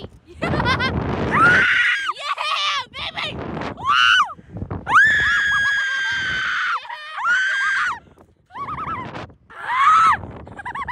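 Two riders on a slingshot ride screaming and shrieking as they are flung and bounced. The shrieks come in a run of short and long cries, the longest a steady high scream about five seconds in that lasts nearly two seconds.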